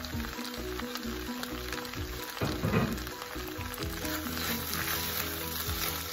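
Shrimp fried rice sizzling in a hot pan as a spatula stirs strips of egg through it, over background music.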